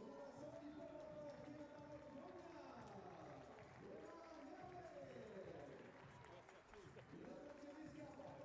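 Faint, distant voices talking over low outdoor venue ambience.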